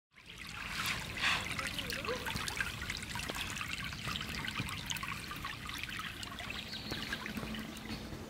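Shallow creek water trickling and babbling over a streambed, a steady patter of small splashes that fades in at the very start.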